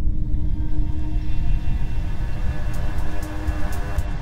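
Intro of an electronic track: a deep rumbling drone under a swelling chord of held tones, with a few sharp high ticks coming in near the end as the beat begins.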